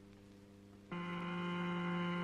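Steady sustained tone of a thin disc bowed at its edge to make sand figures. A faint note changes about a second in to a louder, slightly lower note rich in overtones, and a different pitch gives a different pattern in the sand.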